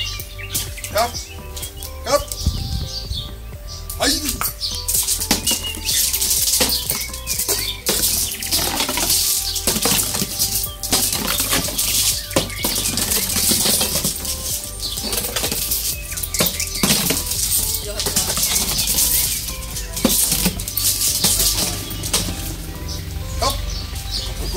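Plastic bottle toy on a rope clattering, rattling and scraping over paving stones as a dog jumps at it, bites it and tugs it, in many quick irregular clatters, with background music underneath.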